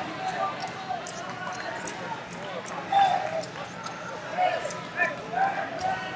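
Chatter of many voices echoing in a large sports hall, with scattered short, sharp knocks and clicks from activity around the wrestling mats.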